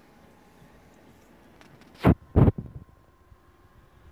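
Two loud handling knocks in quick succession about two seconds in, after quiet room tone: the camera or the action figures being moved on the table.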